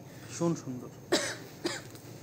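A person coughs once, a short sharp burst about a second in, among a few brief murmured fragments of speech.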